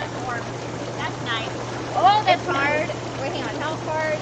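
Inflatable hot tub's air-bubble jets running: a steady rushing, bubbling noise with a low motor hum underneath. Women's voices come and go over it, loudest about two seconds in.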